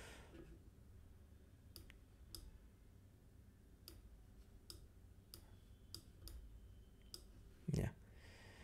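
Faint computer mouse clicks, several of them spaced irregularly, over near silence.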